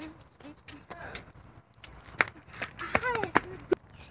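Scattered sharp knocks and clicks, with a person's voice calling out about three seconds in.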